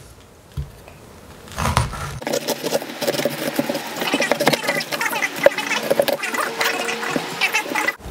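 Kitchen knife cutting through a raw red cabbage on a wooden chopping board: crisp, irregular crunching of leaves and knife strokes, starting about two seconds in.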